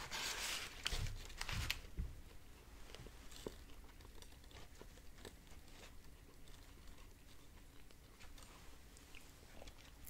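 Close-miked biting and chewing of a biscuit sandwich: a few louder bites and chews in the first two seconds, then quieter chewing with small mouth clicks.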